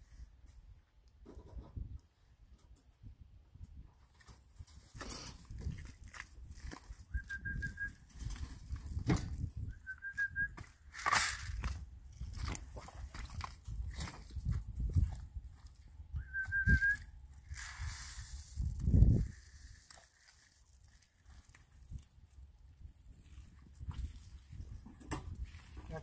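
Knocks and rattles of a wire cattle-panel pen and a metal self-feeder being handled, mixed with footsteps in mud. Three short high squeaky notes come at intervals, and there is one louder low thump about three quarters of the way through.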